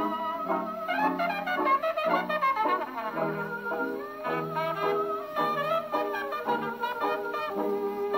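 A 1927 Victor Orthophonic Credenza, a spring-motor acoustic horn phonograph, playing a 1929 electrically recorded 78 rpm shellac record of a hot jazz band. A trumpet leads over a steady beat of low bass notes.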